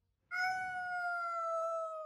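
A cartoon kitten's long, drawn-out meow: a single high, steady cry that starts about a third of a second in and sinks slightly in pitch toward the end.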